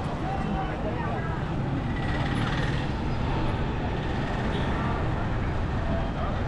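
Town street traffic recorded on the move: a steady low rumble of engines and road noise with motorcycles among the vehicles, and people's voices in the street.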